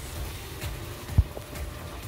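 Low, steady rumble inside a car, with one sharp thump a little after a second in.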